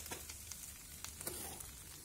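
Spiced sprouted-moong and beetroot kabab mixture frying in ghee in a nonstick pan over low heat: a faint, steady sizzle.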